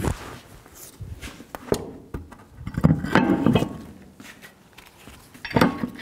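Steel wheel and tire being lifted and slid onto the hub studs of a truck's front wheel: scattered metal knocks and scrapes, a louder clank about three seconds in, and sharp metallic clinks near the end.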